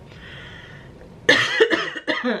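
A woman coughing: a sudden short cough a little over a second in, after a quiet pause.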